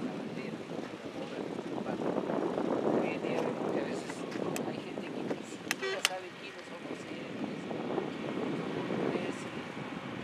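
A man's voice addressing a group, indistinct, over steady outdoor background noise. Two sharp clicks about six seconds in.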